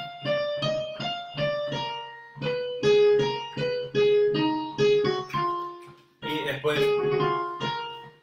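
Computer piano playback from Finale notation software: a melody of short, repeated notes in B♭ Phrygian over a low bass line, the same short figure played several times over.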